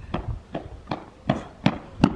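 Running footsteps on an asphalt street, sharp slaps about two to three a second, growing louder as the runner comes closer.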